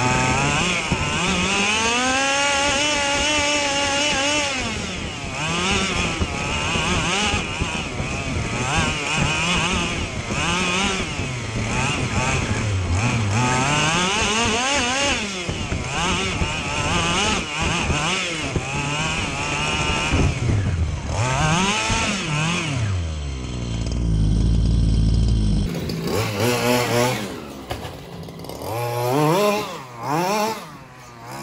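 Close-up onboard sound of an FG Marder 25 cc two-stroke petrol RC buggy engine, revving up and down over and over, its pitch rising and falling every second or two. Near the end a loud low rumble takes over for a couple of seconds before the revving returns.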